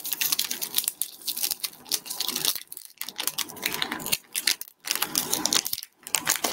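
Pokémon trading cards and their foil pack wrappers being handled: a quick run of small clicks and crinkles with short pauses near three and five seconds in.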